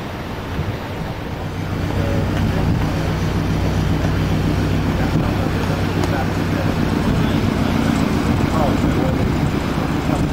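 A tugboat's diesel engine running with a steady low hum, growing louder about two seconds in and then holding, over wind noise on the microphone and churning water.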